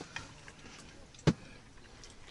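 A single sharp knock of tableware on the camp table about a second in, with a few faint clicks around it.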